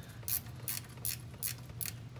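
Socket ratchet clicking in even strokes, five clicks about 0.4 s apart, as a 13 mm bolt holding the old mechanical fuel pump is backed out.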